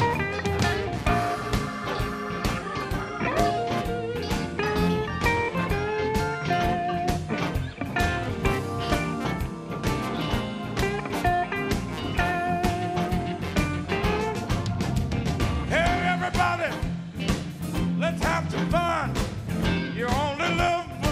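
Live blues band playing an instrumental passage: electric guitar lead lines over a steady drum beat and full band, with several bent guitar notes near the end.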